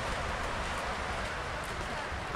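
Steady outdoor background noise, an even hiss over a low rumble, with no distinct sounds standing out.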